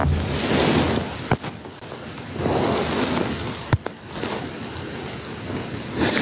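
Rushing noise on a phone's microphone as it is handled, swelling and fading about three times, with two sharp clicks.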